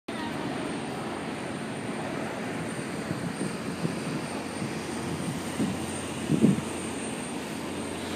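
Wind rushing over the microphone on the open deck of a moving cruise ship: a steady rush that swells unevenly, with one stronger gust about six and a half seconds in.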